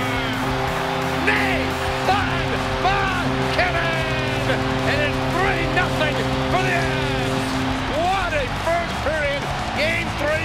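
Hockey arena crowd cheering a goal over a steady held chord, which cuts off about eight seconds in.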